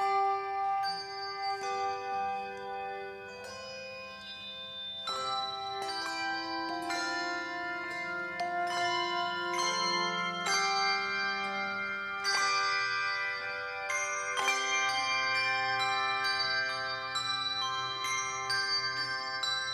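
Handbell choir playing a slow piece: chords of handbells struck together every second or so, each chord left to ring and overlap the next.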